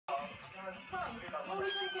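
A newborn Siamese kitten gives a thin, high mew near the end, a single drawn-out, slightly falling cry. It sounds over a television's talk and background music.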